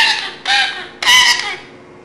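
Indian ringneck parakeet giving three short, high-pitched squawking calls in quick succession, about half a second apart.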